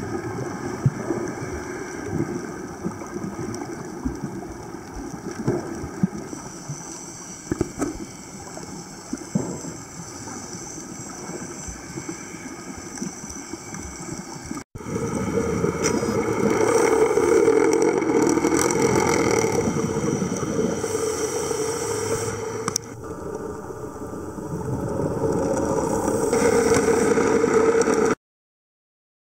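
Underwater sound picked up by a diving camera: an irregular, crackly wash of water noise. After a brief dropout about halfway, it becomes a louder, steadier rush with a low hum, and changes again a few seconds before the end.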